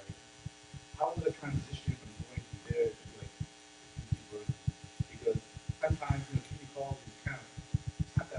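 Faint, off-microphone speech in a room, with a steady electrical hum and frequent short, low knocks.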